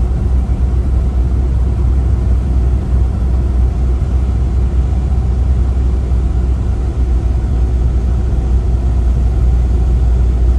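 A car driving on a snow-covered road, heard from inside the cabin: a steady low rumble of engine and tyres.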